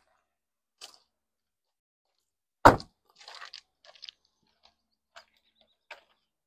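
A car door shut with a single loud thud about two and a half seconds in, followed by scattered footsteps on loose gravel.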